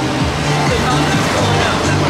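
A band playing held low notes that step from one pitch to another, with crowd chatter underneath.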